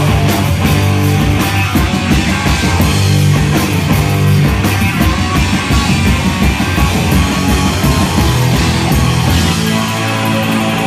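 Live heavy rock band playing loudly: distorted electric bass and guitar over pounding drums.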